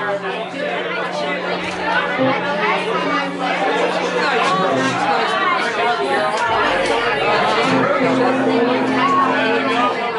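Many people talking at once in a bar, a steady babble of overlapping conversation. Under it a steady low tone is held for the first few seconds, and another, a little higher, comes in near the end.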